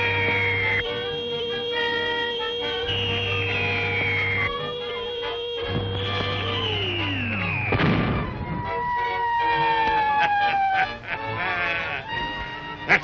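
Old film sound effects of a rocket projectile in flight over sustained music: repeated falling whistles, then a steep plunging whistle that ends in a crash about eight seconds in.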